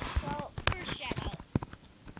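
A child's short non-word vocal sounds mixed with several sharp knocks and rubs from a hand grabbing and handling the recording device, which tilts the camera around.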